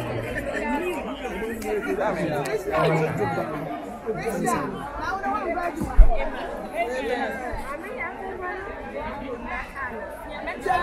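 Crowd chatter: many people talking over one another at once, with a single sharp low thump about six seconds in.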